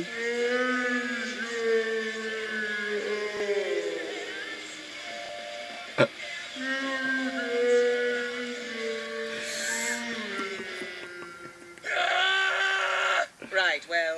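A voice holds two long, drawn-out notes, each several seconds long and slowly bending in pitch, with a sharp click between them about six seconds in. Near the end come louder, quicker voices.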